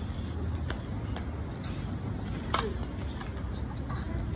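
Outdoor background noise with a steady low rumble like distant traffic, a few faint ticks, and one short high voice-like sound about two and a half seconds in.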